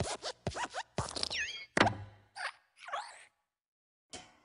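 Cartoon sound effects of the Pixar desk lamp hopping: a quick run of springy squeaks and thumps, with short sliding squeaks. The loudest thump, just under two seconds in, is the lamp landing on and squashing the letter I, and a couple of softer squeaks follow before the sound stops.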